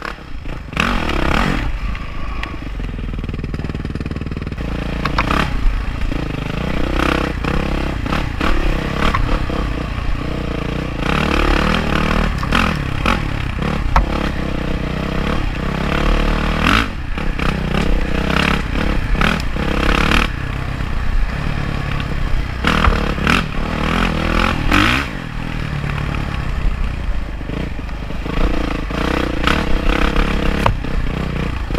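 Yamaha dirt bike engine revving up and down as it is ridden over a rough dirt track, with repeated knocks and clatter from the bike over the bumpy ground.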